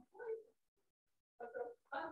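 A person speaking indistinctly in short phrases, with a pause of about a second in the middle.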